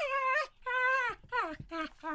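A dog 'talking' in a run of about four drawn-out whining yowls. The first two are longer and held, and the last two are shorter and fall in pitch.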